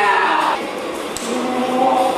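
Music of a choir singing sustained chords. The held notes change pitch about half a second in, and a new chord builds towards the end.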